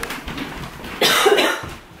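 A woman coughing, with one loud, harsh cough about a second in, set off by the burn of a jalapeno she has just bitten into.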